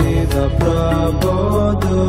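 Hindu devotional chant music with a melody over a steady low drone and regularly spaced percussion strikes, with no sung words at this point.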